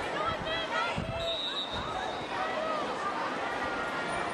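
Live pitch sound at a football match: players shouting and calling to each other, with thuds of the ball being kicked and a brief high whistle about a second in.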